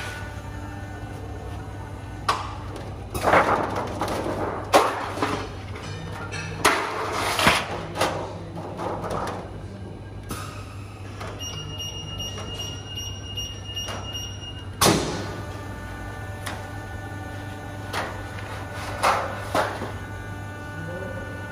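A Heidelberg Printmaster PM 74 offset press hums steadily during an Autoplate plate change. Sharp knocks and rattles come as the aluminium printing plate is flexed, pulled off and fed onto the plate cylinder, the loudest bang about three quarters of the way through. A steady high tone sounds for about three seconds midway.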